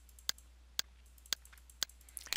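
Four computer mouse clicks, about half a second apart, from clicking a scrollbar arrow, over a faint low hum.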